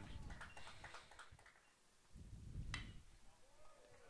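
Near silence: faint outdoor background at a ballpark, with a single faint click about two-thirds of the way through.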